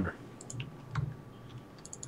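Faint light clicks, a few scattered, then a quick run of them near the end, like keys being typed on a computer keyboard.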